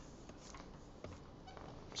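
Near-quiet room tone with a single faint click about a second in.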